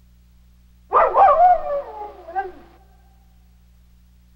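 A dog howling: one loud call starting about a second in, sliding down in pitch and fading out within about two seconds.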